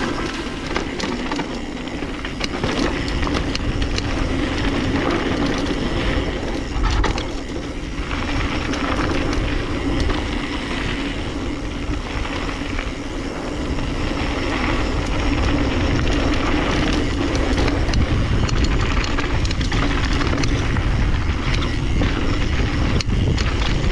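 Downhill mountain bike rolling fast over a gravel and rock trail: tyres crunching over loose stones, with a constant rattle and clatter from the bike over the bumps and wind rushing on the helmet-mounted microphone.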